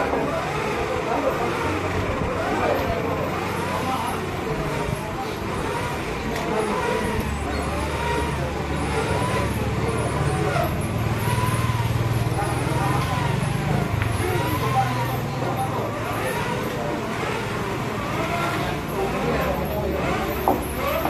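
A motor vehicle engine running steadily, its low hum shifting in level, under background voices.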